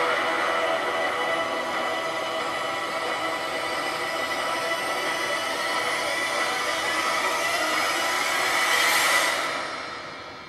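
Soundtrack of a promotional video: music with a dense rushing noise over it, steady, swelling about nine seconds in and then fading away.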